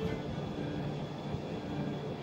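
Steady outdoor background noise, a low hum with no distinct events.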